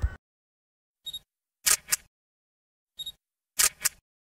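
Camera shutter clicking twice, about two seconds apart, each time a short click followed by a quick double click, with dead silence between.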